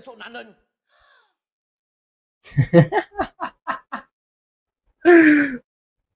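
A man laughing: a quick run of short laughing bursts about midway, then one louder, breathy laugh near the end.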